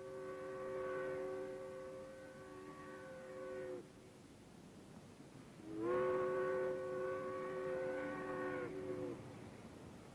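A steam whistle sounding a chord of several tones in two long blasts. The first is already sounding and cuts off a little under four seconds in. The second opens with a short upward slide about a second and a half later and cuts off about three and a half seconds after that.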